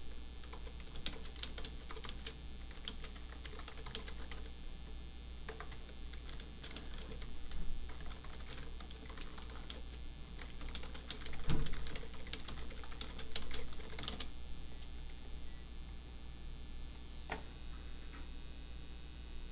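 Computer keyboard typing in irregular runs of keystrokes, which stop about fourteen seconds in; a single click follows near the end. A dull low knock sounds partway through, over a steady low hum.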